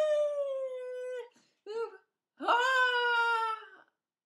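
A woman's wordless singing: two long held notes with a short note between them. Each note slides up at its start, holds, and sags slightly in pitch.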